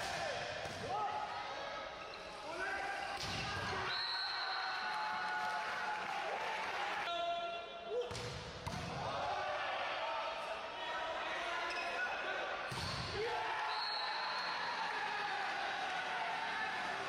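Volleyball play in an echoing indoor sports hall: the ball struck hard a few times, players' shouts and calls, shoe squeaks on the court, and a short steady high whistle twice, about four seconds in and near the end.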